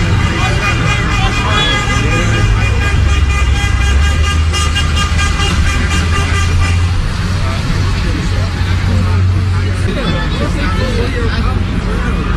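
Street-level city noise: vehicles running, with a steady high-pitched horn-like tone held for about the first seven seconds, and voices mixed in.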